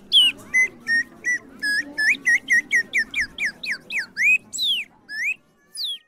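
A rapid run of short, high whistled notes that slide in pitch, about four a second, stopping after about five seconds, with one last note after a short pause.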